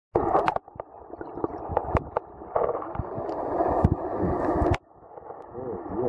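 Muffled water noise picked up by an underwater camera, with scattered clicks and knocks. It drops away abruptly near five seconds in.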